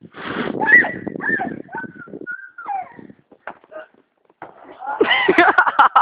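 Excited voices shouting and laughing, dropping off to a short lull in the middle, then a loud burst of choppy laughter from about five seconds in.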